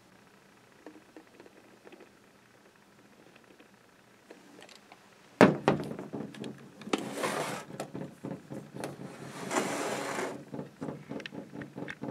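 A Bolex H16 16mm cine camera being handled and moved on a wooden tabletop. After a near-silent start, knocks and clicks begin about halfway through, with two longer scraping sounds about two seconds apart as the camera slides on the wood.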